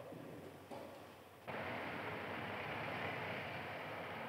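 Faint background hiss, then a steady rushing noise that starts abruptly about a second and a half in.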